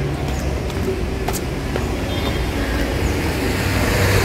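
Road traffic on a wet street: a steady rush of passing vehicles, growing louder near the end as one comes closer with a low engine hum.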